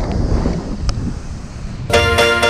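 Wind noise on the microphone over breaking surf, with one sharp click about a second in. Music starts right at the end.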